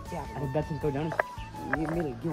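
An elderly woman's voice talking over steady background music, with two brief sharp sounds mixed in.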